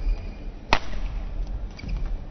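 A badminton racket hitting the shuttlecock once, a single sharp crack about three-quarters of a second in, over the low rumble of a sports hall.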